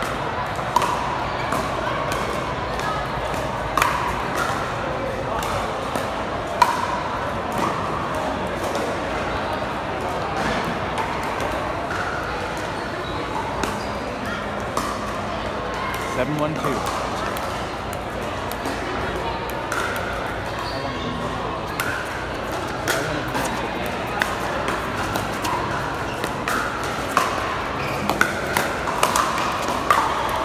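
Pickleball paddles striking the plastic ball: scattered sharp pops every few seconds, coming quicker near the end as a rally runs on the near court. Steady crowd chatter underneath.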